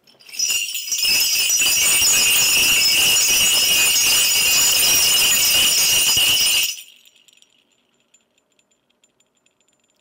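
A Korean shaman's brass bell rattle (mudang bangul), a cluster of small brass bells on a handle, shaken hard and continuously for about six seconds. It then stops abruptly, leaving only faint scattered jingles as the bells settle.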